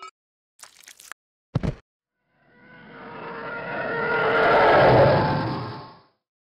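Sound effects of an animated channel intro: a few short clicks and a knock, then a noisy sound with a steady pitched tone that swells over about three seconds and fades out near the end.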